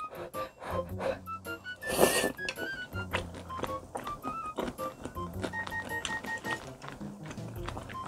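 Light background music of short, bright separate notes over a bass line. About two seconds in, a short crunch of a bite into a crispy fried shrimp.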